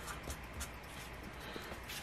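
Faint scratching of a felt-tip marker writing on a paper scratch-off ticket, with a few light ticks.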